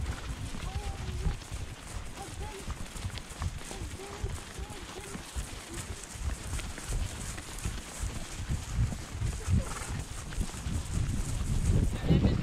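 Horse hoofbeats on grass, a run of dull repeated thuds from a horse being ridden across a field.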